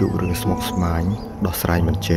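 A person's voice in short phrases over faint, steady background tones.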